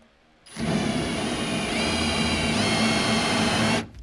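Cordless drill spinning a four-inch hole saw in reverse against a spray-in bedliner, scoring a cutting groove before the real cut. The motor starts about half a second in, its whine stepping up in pitch twice, and stops just before the end.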